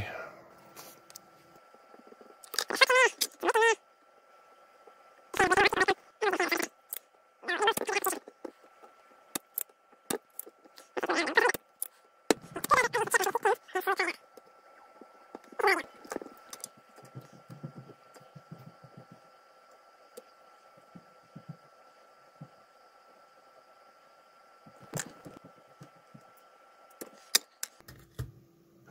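A man's muttered speech in several short bursts through the first half, with a faint steady high-pitched whine underneath and a few small clicks.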